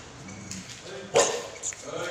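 A dog barks: one loud bark about a second in, then a shorter one.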